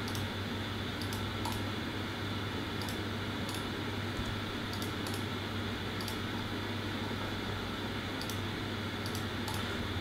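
Computer mouse clicking about a dozen times, sparse and faint, over a steady low room hum.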